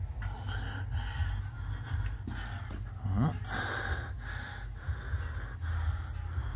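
Breathing close to the microphone over a steady low rumble, with a brief rising vocal sound about three seconds in.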